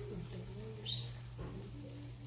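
Low, wavering cooing calls, like those of a dove or pigeon, over a steady low hum, with a short rising chirp about a second in.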